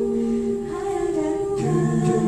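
High school vocal jazz ensemble singing a cappella, several voices holding a chord together. The chord thins and shifts in the middle, and a new chord is held a little after halfway.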